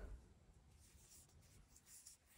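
Near silence, with faint scratchy rubbing of yarn drawn over a metal crochet hook as a double treble stitch is worked.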